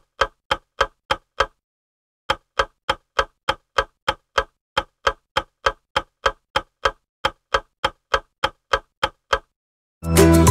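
Clock-ticking sound effect marking a countdown timer: evenly spaced sharp ticks at about three a second, with a short break about a second and a half in, stopping just before the end.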